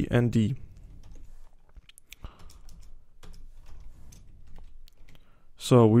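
Typing on a computer keyboard: sparse, irregular key clicks.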